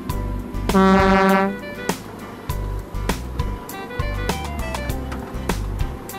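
Cartoon background music with a steady percussive beat, and one long horn-like note about a second in.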